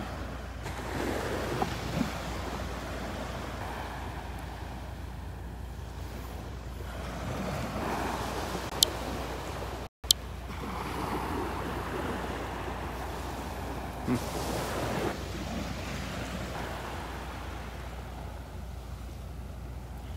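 Small surf washing and lapping onto a sandy beach, an even rush that swells and fades every few seconds. The sound drops out for a moment about halfway through.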